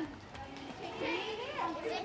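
Children's voices talking and playing, the words indistinct.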